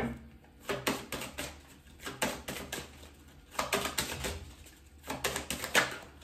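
A deck of tarot cards being handled: irregular light clicks and taps of the cards in several short clusters.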